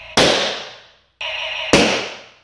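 A balloon popping with a sharp, loud bang as the laser of a modified Playmates Star Trek Type II toy phaser burns through it, twice, about a second and a half apart, each bang ringing away in the room. Before each pop the phaser's steady electronic firing tone plays.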